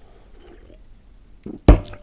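Quiet sipping and swallowing of beer from a can, then a sudden loud thump near the end.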